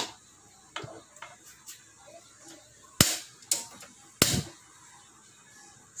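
A few sharp kitchen clicks and knocks at a gas stove while cookware and a spatula are handled: a light one about a second in, then three louder ones around three to four seconds in, the last with a short low ring. Between them it is quiet.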